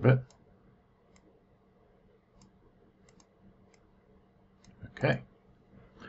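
A few faint, sharp computer mouse clicks, spaced irregularly, about one every second.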